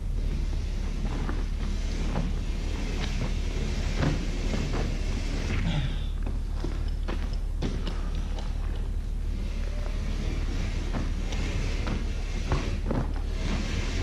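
Hand work on a sheet of drywall: irregular scrapes, taps and handling noises from the board, with footsteps on a dirt floor, over a steady low hum.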